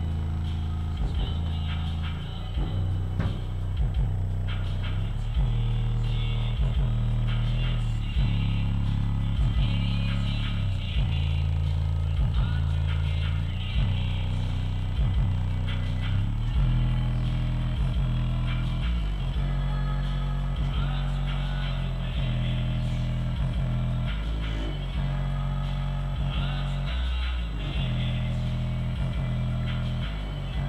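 Bass-heavy music played through a pair of Massive Hippo XL64 six-and-a-half-inch subwoofers running in free air, the deep bass notes held and changing pitch every second or two.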